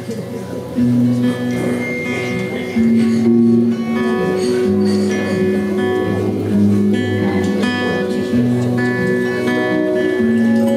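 Live band playing a slow song: strummed acoustic guitar with electric guitar and violin, sustained notes and chords changing every second or so.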